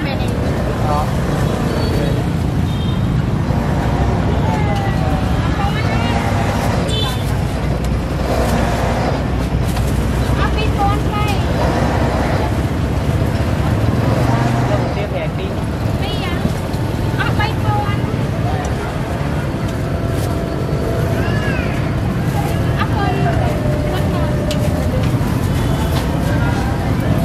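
Motor scooter engines idling close by with a steady low rumble, while people talk nearby.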